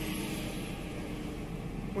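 Steady road and engine noise heard inside a car's cabin, an even rush with a low hum.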